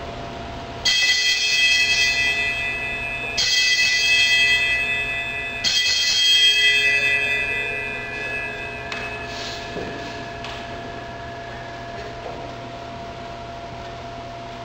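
Altar bells rung three times, about two and a half seconds apart, each ring a sudden clash of several bright tones that fades slowly, the last ring dying away longest. This is the ringing at the elevation of the consecrated host in the Catholic Mass.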